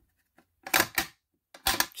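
Sharp clicks and knocks of plastic and metal as a Simplex dual-action T-bar fire alarm pull station is handled: one click under half a second in, a cluster around the middle, and a quick run of clicks near the end.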